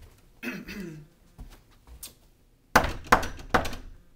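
Three loud knocks on a wooden door, about a third of a second apart, near the end.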